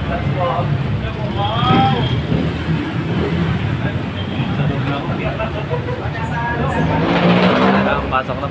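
Steady low rumble of a motor vehicle engine running close by, swelling louder near the end, under scattered chatter of voices.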